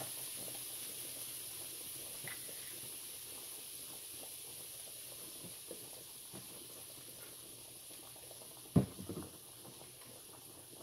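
Diced onions and bell peppers sizzling faintly in oil in a frying pan, a soft steady hiss that fades a little; a single sharp knock near the end.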